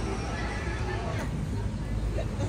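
City street ambience: a steady low traffic rumble with people's voices, and a short pitched call about a second in.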